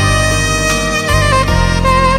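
Soprano saxophone playing a slow, smooth-jazz melody of held notes that step to new pitches several times, over sustained low accompaniment.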